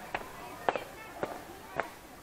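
Footsteps on a paved path, four short sharp taps about two a second.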